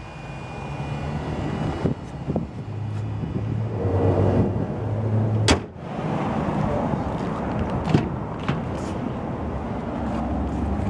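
Low steady hum from a 2011 Lexus CT200h hybrid switched on and running on electric power, swelling briefly about four seconds in. There is one sharp click about five and a half seconds in.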